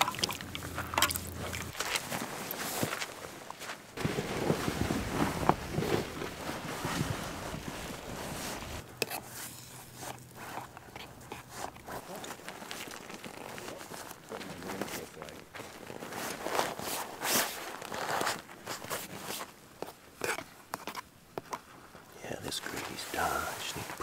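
Handling noises: a metal spoon stirring and scraping in a small metal camp pot, and the rustle and crinkle of tent fabric being folded on sandy ground, with scattered short clicks and scrapes.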